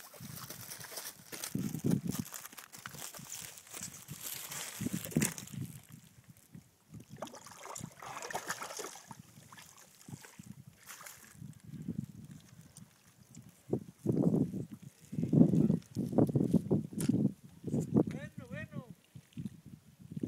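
Shallow water splashing and sloshing as a hooked striped bass is drawn through the rocky, weedy shallows and grabbed by hand, with low voices breaking in now and then, loudest in the last few seconds.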